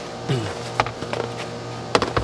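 Hard plastic booster-seat parts being handled: a few light clicks and knocks, the sharpest just before the end, over a steady hum.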